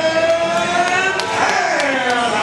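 A man's voice through a public-address microphone, holding one long drawn-out announcing call that falls away about a second and a half in, with a few faint clicks behind it.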